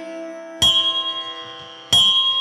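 A pause between sung lines of a Kannada devotional suprabhatha: a faint steady drone holds while a bell is struck twice, about 1.3 s apart, each strike ringing out and fading.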